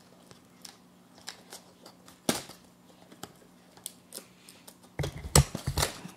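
Cardboard box being torn and pried open by hand: scattered small tearing and crackling sounds, one sharper crack about two seconds in, then a louder flurry of ripping and handling near the end.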